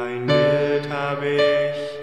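Slow instrumental piano music: sustained chords, with a new chord struck about a third of a second in and further notes added around the middle.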